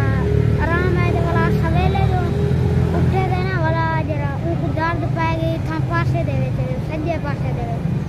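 A boy talking in Saraiki, with a steady low rumble beneath his voice.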